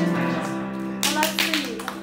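Dance music whose last notes are held and fade, then hand clapping starts about a second in, several claps a second.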